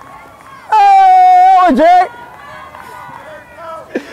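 A long, drawn-out shout from a player, one held call lasting over a second with a dip in pitch just before it ends. Near the end a single sharp smack is heard.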